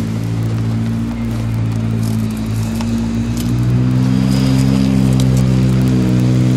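A diesel engine running at a steady idle, a low even hum that gets a little louder about halfway through. A few light clicks and rustles from handling sample bottles sit on top.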